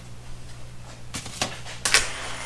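A sheet of thin textured plastic being handled and lifted off a workbench, giving three brief scrapes and knocks in the second half, over a steady low hum.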